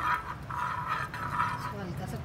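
A spoon scraping and rubbing across the surface of a hot pan as a lump of butter is pushed around to melt and spread.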